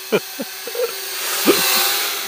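Small folding toy quadcopter (SkyCity TKKJ TK112W) in flight, its motors and propellers giving a steady high buzz that swells to a hiss as it flies in close, then eases off near the end.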